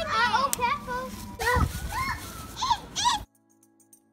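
Young children's excited squeals and wordless chatter, cutting off suddenly about three seconds in.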